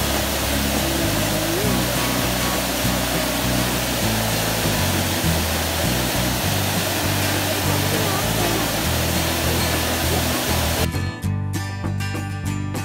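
Waterfall pouring down in a loud, steady rush of water, over background music with a low bass line. The water sound cuts off about a second before the end, leaving only the music.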